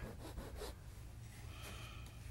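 Faint rubbing and scraping of a paint tool worked against the canvas, over a low steady hum of room noise.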